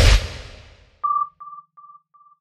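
A whoosh fading out, then an electronic sonar-style ping about a second in, repeating as quieter and quieter echoes about three times a second.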